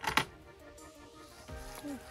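Faint background music with held notes, and a single sharp knock just after the start as the hinged wooden nest-box lid of a chicken coop is lifted open.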